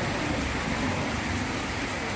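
Heavy rain falling on a wet paved road, a steady even hiss.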